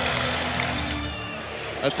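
Arena crowd noise with music over the public-address system, steady held notes beneath the crowd's hubbub. A commentator's voice comes back in near the end.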